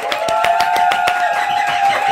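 Two people clapping quickly over a held musical chord.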